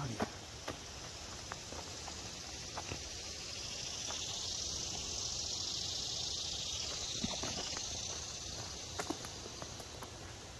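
A high, steady chorus of insects in summer woodland, swelling in the middle and fading again, with a few soft footsteps on a dirt trail.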